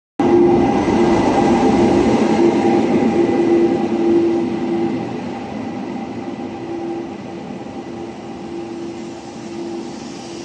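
Electric-hauled passenger train at the platform: a steady rumble with a held whine of a few fixed pitches. It is loudest at first and grows quieter from about halfway.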